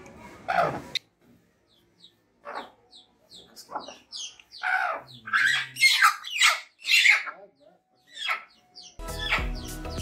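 An agitated hen squawking in a run of short, sharply falling calls, thickest and loudest in the middle. Music starts about a second before the end.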